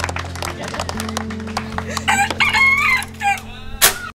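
A rooster crowing once, a drawn-out call of several linked notes about halfway through, over a steady music bed. A sharp click comes just before the end.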